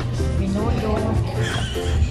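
Background music with a steady beat and a singing voice.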